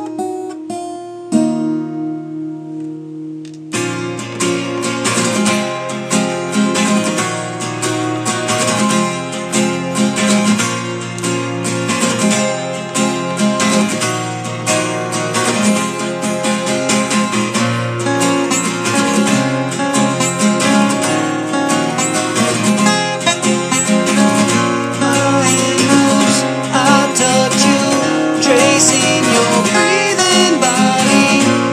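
Acoustic guitar playing an instrumental break in a phone-recorded song: a held chord for the first few seconds, then fuller, busier strumming and picking.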